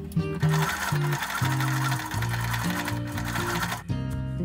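Electric sewing machine stitching steadily through layers of cotton fabric, cutting off suddenly just before the end, over background acoustic guitar music.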